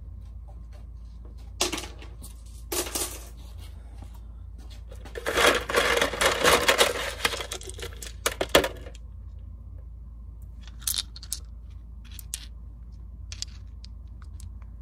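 Small wet stones clicking and clattering against each other and a plastic canister. A couple of sharp clacks come about two and three seconds in, then a dense rattle as a hand rummages through the stones in the canister, with a few single clicks near the end.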